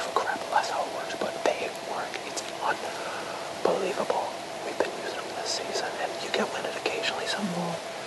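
A man whispering in short phrases.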